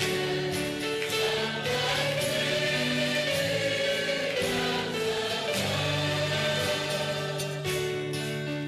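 Christian worship song: singing voices carrying long held notes over a steady instrumental accompaniment.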